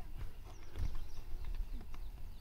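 Outdoor ambience: a low wind rumble on the microphone with a few faint, soft knocks.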